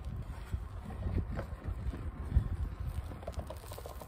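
Gusting wind buffeting the microphone, an uneven low rumble.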